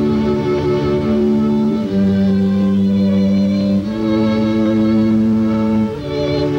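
A string quartet playing a slow piece in long held chords that change about every two seconds, the upper notes with vibrato.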